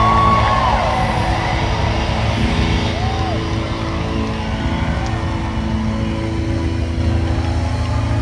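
Live concert sound: the band holding a sustained low chord under crowd cheering and shouting, with a few rising-and-falling yells in the first second and again about three seconds in.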